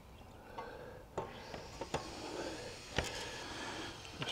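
A few light clicks and knocks of a bicycle rear wheel being fitted into the frame, its cassette and hub meeting the chain, derailleur and dropouts, with the sharpest click about three seconds in.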